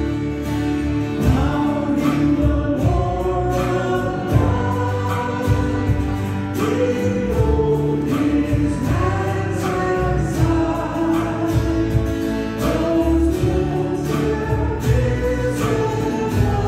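Church worship team singing a hymn together into microphones, backed by guitar and a drum kit keeping a steady beat.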